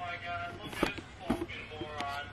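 A man's voice saying a drawn-out 'oh' twice, with a couple of light knocks between them.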